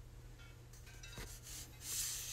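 Faint handling noise: a hand or clothing rubbing near the phone's microphone, with a light tick about a second in and a brief rise in hiss near the end.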